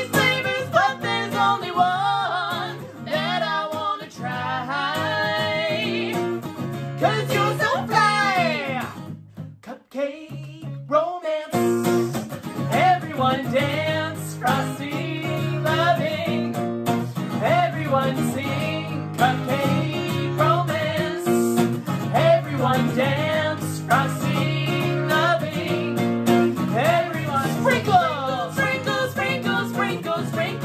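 A man and a woman singing a lively children's song to strummed acoustic guitar. The music nearly drops out for a moment about nine seconds in, then carries on.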